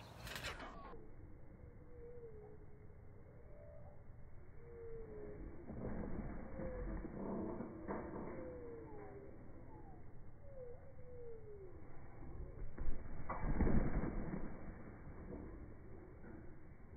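Slowed-down slow-motion audio of a trampoline bounce and front flip: drawn-out, low thuds of the trampoline mat, the loudest near the end, with short falling tones of slowed background sounds over a low rumble.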